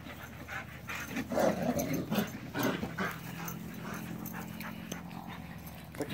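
Dogs chasing each other in play on grass, with short, irregular breathy and scuffling sounds in the first half, then a faint low steady hum over the last few seconds.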